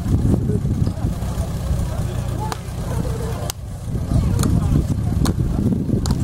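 Portable fire pump engine running steadily under voices of people talking, with a few sharp clicks.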